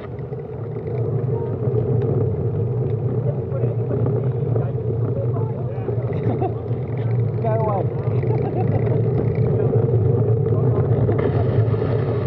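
Steady low rumble of wind and road noise on a bicycle-mounted camera, with indistinct voices of other riders briefly heard about two-thirds of the way in.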